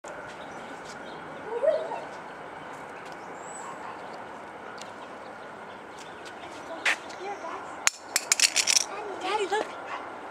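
Steady outdoor background hiss, with a brief pitched sound about one and a half seconds in. Near the end comes a quick run of sharp clicks, then a person's voice.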